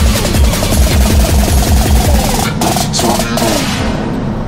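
Electronic background music with a steady kick-drum beat, about four beats a second, that drops out a little over two seconds in and gives way to a few stuttering cuts before a quieter break.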